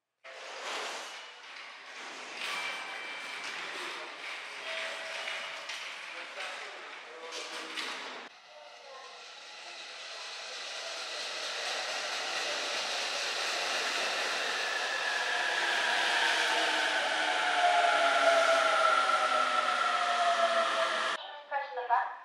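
For about eight seconds, busy station-platform sounds with short tones and voices; then a JR East E531-series Joban Line electric train pulling in along the platform, its noise building while its motor whine falls in pitch as it brakes, cut off suddenly near the end.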